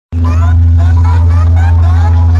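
DJ speaker tower playing a loud sound-check track: a heavy, steady deep bass drone with short rising tones repeating over it, about four a second.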